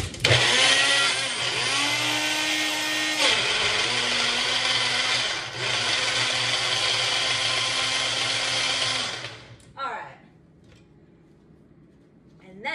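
Small personal bullet-style blender running with its cup pressed onto the base, blending yogurt and chopped apple. The motor's pitch shifts as it works through the load, easing briefly twice. It cuts off about nine and a half seconds in.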